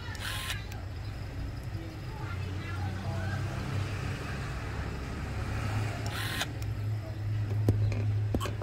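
Small cordless electric screwdriver spinning in two short bursts, about half a second in and again about six seconds in, backing out the midframe screws of a phone, over a steady low hum; a sharp click near the end.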